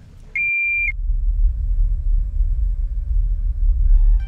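A single short, steady high beep, then a loud, steady low rumble of airliner cabin noise from the jet engines and airflow, heard from a window seat in flight.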